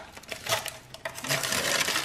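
Metal spatula scraping and clicking against a metal baking sheet in a run of short, irregular strokes, thicker in the second half, as it is worked under a pie stuck fast to burnt-on filling.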